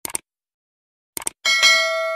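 Subscribe-button animation sound effect: a couple of quick mouse clicks, a few more clicks about a second later, then a bright bell chime that rings on.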